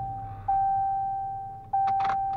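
Ram 1500 pickup's dashboard warning chime repeating a single steady tone, struck about every second and a quarter and fading after each strike. It is the reminder that sounds with the engine off, the driver's door open and the key left in the ignition. A click near the end.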